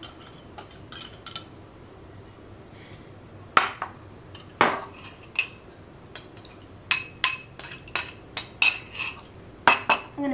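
Metal spoon clinking and scraping against small bowls, a glass mixing bowl among them, as butter is spooned onto brown sugar. A few separate clinks, then a run of quick taps, about three a second, near the end.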